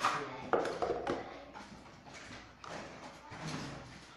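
Small objects being handled, shifted and knocked together while someone rummages for an item, with two sharp knocks in the first second followed by irregular rustling and clatter.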